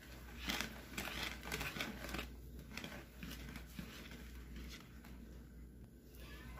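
Wire balloon whisk stirring cake batter in a plastic bowl: quiet, irregular swishing and scraping strokes, about two a second.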